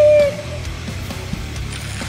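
A short, loud, high-pitched toot blown on a yellow plastic horn right at the start, the second of two such blasts, followed by steady background music.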